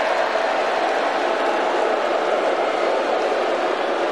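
Large arena crowd shouting together, a loud, steady wash of many voices with no single voice standing out.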